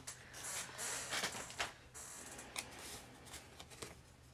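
Paper being torn and rustled as a sticker is ripped out of a sticker book, followed by a few light sharp ticks of paper handling.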